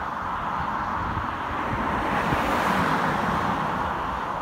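Road traffic: the tyre and engine noise of cars on the road, swelling slightly about two and a half seconds in.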